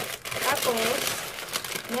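Paper shopping bag crinkling and rustling as it is handled and lifted.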